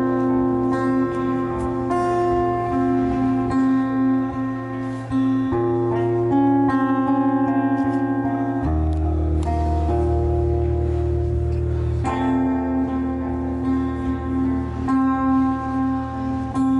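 Acoustic guitar strummed in an instrumental passage of a live song, with long held notes over a steady bass; the chords change about 9 and again about 12 seconds in.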